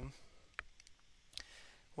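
A few faint, short clicks, the clearest about half a second and a second and a half in, against quiet room tone.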